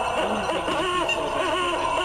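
Animatronic Halloween owl decoration hooting through its small built-in speaker, a couple of rounded hoots in the middle, after its button was pressed.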